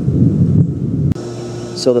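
A loud, low rumble of thunder rolling, cut off abruptly about a second in.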